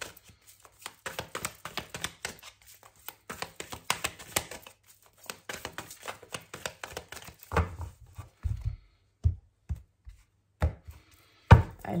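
A Santa Muerte tarot deck being shuffled by hand: a quick, irregular patter of soft card clicks and slaps. In the last few seconds there are several dull knocks, the loudest just before the end.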